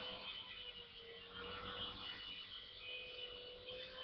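Faint, steady whine of a toy Brookstone Combat Helicopter's small electric motors and rotors in flight, wavering slightly in pitch as it is steered.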